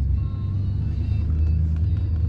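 Chevrolet pickup truck's engine and running gear making a steady low rumble, heard from inside the cab as the truck rolls slowly.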